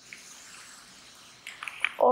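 Sewing thread being drawn through thin saree fabric with a hand needle: a steady hiss for about a second and a half, then a few short ticks near the end.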